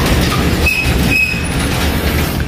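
A steel sliding gate rolling along its track: a steady low rumble, with two brief wheel squeals about two-thirds of a second and a second in.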